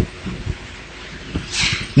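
A pause in a man's speech through a microphone: faint room noise with a few soft low knocks, and a short breath in near the end.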